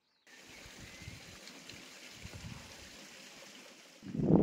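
Faint steady rushing like a small stream running, starting suddenly just after an edit cut, with some low rumbling underneath and a single faint whistle about a second in.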